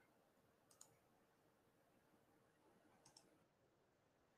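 Near silence broken by faint computer mouse clicks: a single click about a second in and a quick pair of clicks about three seconds in.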